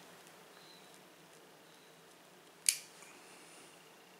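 A pipe lighter clicks once, sharp and loud, a little under three seconds in, while a briar pipe is lit over faint room tone; a faint thin high tone follows the click.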